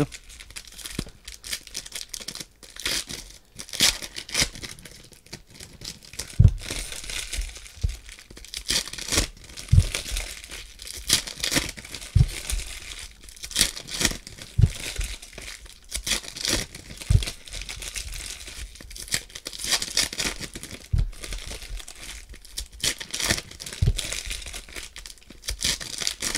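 Foil wrappers of Prizm basketball card packs crinkling and tearing as they are ripped open by hand, in irregular rustling bursts, with occasional soft thumps every couple of seconds.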